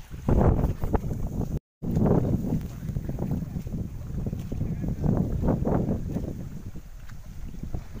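Wind buffeting the microphone in uneven low rumbling gusts over floodwater flowing through a rice paddy. The sound drops out for a moment about two seconds in.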